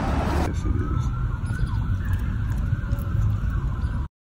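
City street traffic with a low rumble and a faint siren wailing in the distance, its pitch gliding slowly.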